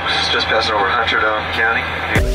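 A man talking over the steady low drone of an airliner cabin in flight.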